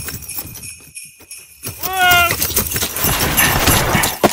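Sleigh bells jingling throughout, with a single deep Santa-style "ho!" about two seconds in. A rushing noise swells up under the bells in the last second or so.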